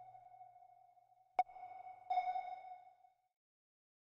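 Sonar-style ping sound effect: a lingering tone fading out, a sharp ping about a second and a half in, then a second, ringing ping just after two seconds that dies away within a second.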